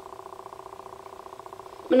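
A steady buzzing hum with a fast, even flutter.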